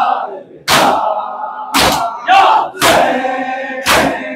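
Shia mourners doing matam, hands striking their chests in unison: four loud slaps, about one a second, with a crowd of voices chanting between the strikes.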